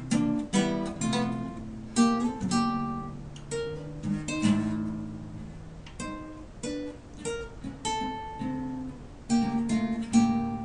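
Two acoustic guitars played together: strummed chords with single melody notes ringing between them. The strumming thins out in the middle and picks up again near the end.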